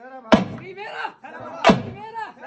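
A double-headed barrel drum struck in a slow, even beat, two heavy strokes about 1.3 seconds apart, with voices over it.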